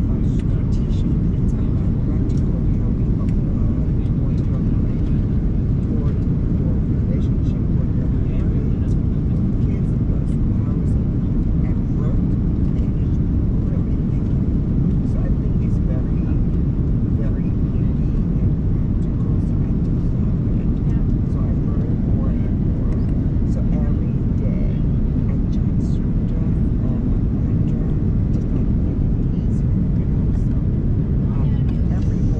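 Steady, loud cabin noise inside an Airbus A330-900neo airliner in the climb after takeoff: the deep, even rumble of its engines and the airflow, with a few faint ticks above it.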